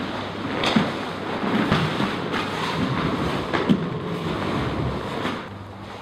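Sambo jackets and bodies rustling and scuffing on a foam mat as two grapplers roll through a reverse omoplata, with a few soft thumps.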